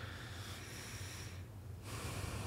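A man breathing audibly into a close microphone: a breath lasting about a second and a half, a short pause, then another breath.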